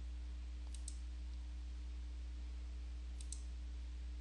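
Computer mouse button clicked twice, each a quick press-and-release pair of sharp clicks, about a second in and again a little after three seconds, over a steady low electrical hum.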